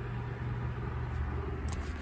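Steady low hum of background machinery, with faint hiss over it.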